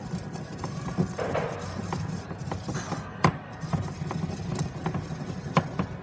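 Pestle grinding dried lavender and chamomile in a mortar: irregular scraping and crunching with small knocks of the pestle against the bowl, and two sharper knocks about three and five and a half seconds in.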